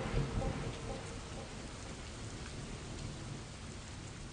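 Rain falling, with a low rumble of thunder in the first second, slowly fading out.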